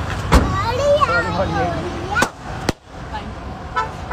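Sharp bangs over excited voices: one loud bang about a third of a second in and two smaller sharp cracks a little past two seconds in.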